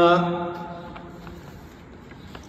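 A man's drawn-out hesitation vowel, a held "aah" on one steady pitch, starting loud and fading out over about a second, then only low background.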